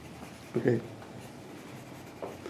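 A brief vocal sound, a short syllable lasting about a quarter second, about half a second in; otherwise quiet room tone.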